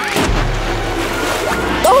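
A balloon bursts, followed by a rush of noise and a low rumble that fades over the next second and a half.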